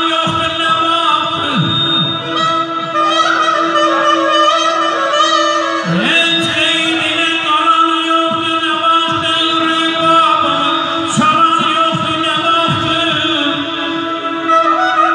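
Live Azerbaijani wedding music: a man singing into a microphone to accordion accompaniment, over a steady held drone note.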